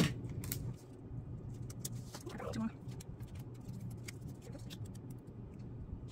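A sharp knock as a plastic tape dispenser is set down on the table, then faint light clicks and rustles of paper envelopes being handled, over a low steady hum.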